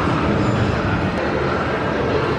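Steady background noise, a low rumble with a hiss over it.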